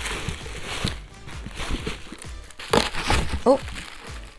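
Tissue paper rustling and crinkling as hands pull it open and lift it out of a box, with a short "oh" near the end.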